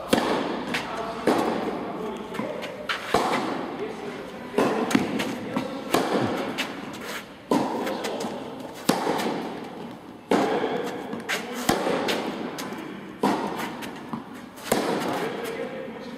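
Tennis ball struck by rackets and bouncing on the court during a serve and rally, a sharp pop every second or so, each hit echoing through a large indoor tennis hall.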